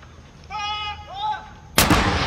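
A 105 mm L118 light gun firing a single blank salute round: one sharp, very loud report near the end.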